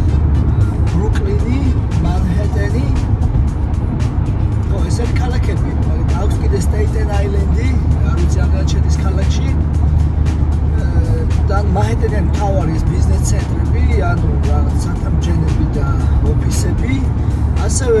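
A man singing along with music inside a moving car's cabin, over a steady low rumble of road and engine noise from highway driving.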